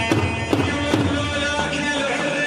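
Live Iraqi choubi dance music: large double-headed drums beaten with sticks in strong strokes about twice a second, under a held melody line.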